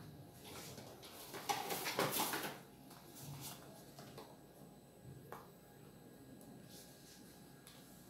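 Plastic ladle scraping and scooping thick soap paste in a plastic bowl, with a scratchy stretch in the first two and a half seconds, then a single light knock a little after five seconds in.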